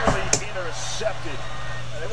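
Football game broadcast audio playing at a moderate level: an announcer's voice over a steady background hum, with one sharp click about a third of a second in.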